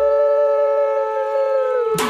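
Conch shell (shankha) blown in a long, steady held note, with a second lower note sounding under it. Both sag in pitch and die away just before the end.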